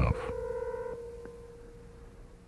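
A short sustained electronic tone, with a few higher tones joining it for under a second, fading away over about a second and a half.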